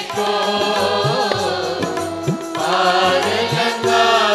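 Sikh devotional kirtan: chanting voices holding long notes over instrumental accompaniment, with a new sung phrase coming in about two and a half seconds in.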